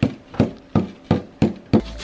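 A plastic digging tool striking a dig-a-glow dinosaur egg's chalky shell again and again, chipping it: about six sharp taps, roughly three a second.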